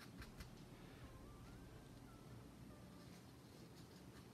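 Near silence: room tone, with a few soft strokes of a paintbrush dabbing on canvas in the first half second. A faint thin tone wavers up and down in the middle.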